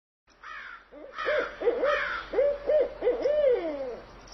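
Owl hooting: a run of short hoots that rise and fall in pitch, the last one long and sliding downward, with a fainter, higher falling call over them.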